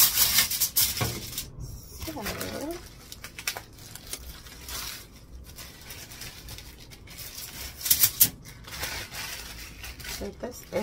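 A plastic bag crinkling and rustling as it is handled, with loud crackles right at the start and again about eight seconds in. There is a short murmur of voice about two seconds in.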